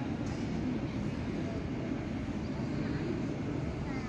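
Steady low rumble of city background noise, with faint talk from people nearby.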